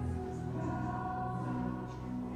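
Worship music with several voices singing together in long held chords.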